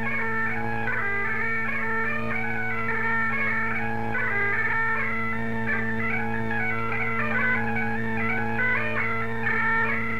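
Highland bagpipes playing a quick tune of rapid notes over steady, unbroken drones.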